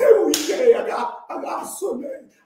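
A man's loud, excited shouting with one sharp hand clap about a third of a second in.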